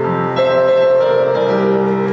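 Keyboard instrument playing held chords, the opening of a piece of music; the chord changes about half a second in and again near the end.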